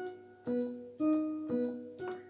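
Single notes played slowly on a two-manual home organ, about two a second, each fading away. One note keeps coming back with other notes in between, a slow run-through of a pattern that imitates thunder when played fast.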